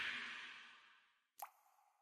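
Near silence after a sound fades out in the first half second, broken by a single short pop that rises in pitch about one and a half seconds in.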